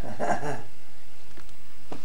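A brief vocal sound lasting about half a second at the start, then only background hiss with a couple of faint clicks.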